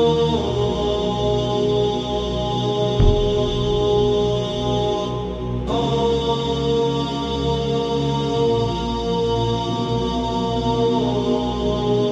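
Outro music of long, held chanted tones that shift pitch a few times, with a single deep boom about three seconds in.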